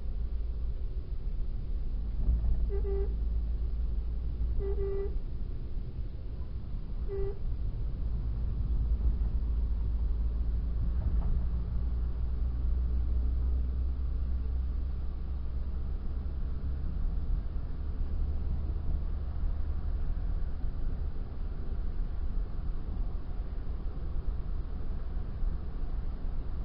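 Car horn tooting three short times in the first few seconds, the middle toot a little longer, over the steady low road and engine rumble of a car driving at speed, heard from inside the car's cabin.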